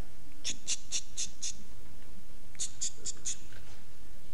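A man imitating a scratching noise in two runs of short, scratchy strokes, about four a second: five strokes, a pause, then four more.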